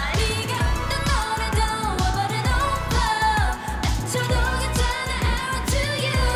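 K-pop dance-pop song: female vocals over a steady beat with a heavy kick drum.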